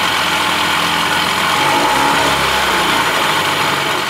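1975 Evinrude 40 hp two-stroke outboard running steadily at idle on spark plugs re-gapped to 0.028 in, sounding good.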